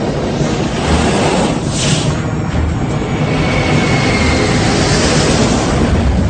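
Soundtrack effects of a steady, noisy roar of aircraft engines and rushing wind, with a brief whoosh about two seconds in.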